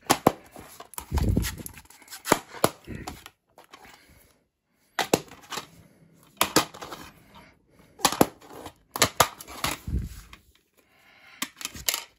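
Plastic DVD case handled on a wooden table: groups of sharp clicks and knocks as it is set down, turned and snapped open, with two duller thumps, one about a second in and one near the end.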